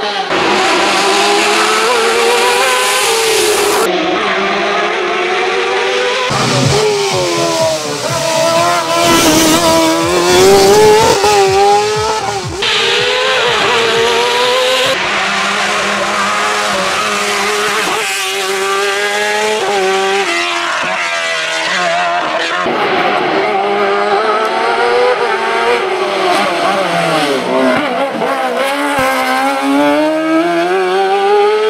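Osella PA21 JRB hillclimb sports prototype's high-revving race engine, loud and sustained, repeatedly climbing in pitch under acceleration and dropping back on gear changes and braking for corners. The sound changes abruptly several times as the car is heard from different points along the course.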